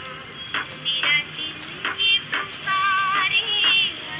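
Hindi film song playing: a high female vocal with wavering held notes over a steady percussion beat.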